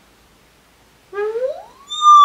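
A woman's drawn-out wordless 'ooooh', starting about halfway through and sliding steadily up in pitch.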